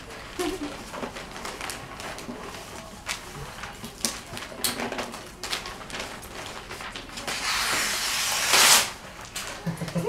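Wrapping paper rustling and crinkling as gifts are wrapped by hand, with many short crackles and, near the end, a louder rush of paper lasting about a second and a half.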